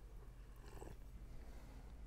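Very quiet room with a low steady hum, and a faint sip of the martini from the glass a little under a second in.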